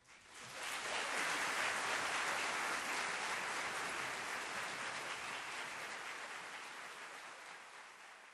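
Audience applauding after the performance. The clapping swells within the first second and then slowly dies away.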